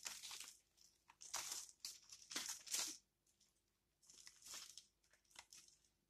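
Faint, irregular crumbling and tearing as a root ball of potted coffee seedlings is pulled apart by hand, soil breaking away and fine roots ripping in short bursts, with the leaves rustling.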